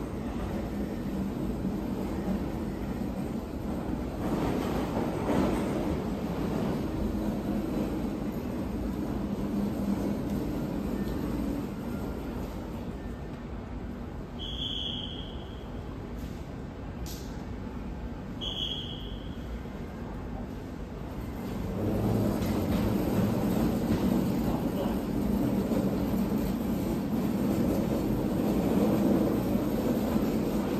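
Low, steady rumble of an EMU3000 electric train approaching through the tunnel into an underground platform. It grows clearly louder about two-thirds of the way through. Before that, two short high tones sound a few seconds apart.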